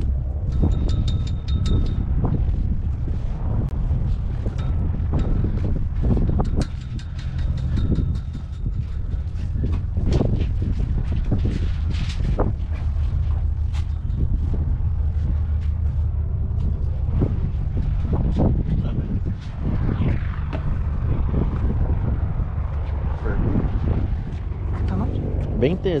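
A steady low rumble with scattered footsteps and faint voices.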